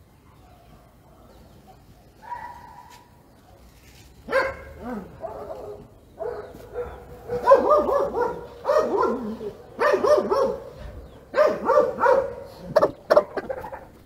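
A dog barking in a rapid series of short bursts, in several clusters from about four seconds in until near the end.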